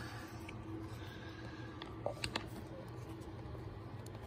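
Quiet garage with a steady low hum, and a few faint clicks about two seconds in as a steel impact socket and adapter are handled on a cordless impact wrench.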